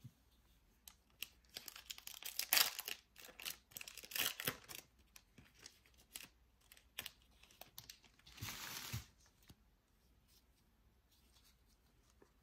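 Foil trading-card pack wrappers crinkling and tearing open, with scattered clicks and rustles of cards being handled; the longest tearing sound comes about two-thirds of the way through.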